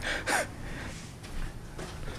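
A man's short, sharp intake of breath, then low room noise in a small, empty room.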